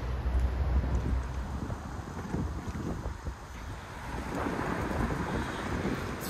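Wind buffeting the phone's microphone, heaviest in the first second or so, over the hiss of road traffic that swells towards the end.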